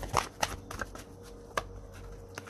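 Tarot cards being shuffled and handled by hand: several short, irregular card snaps.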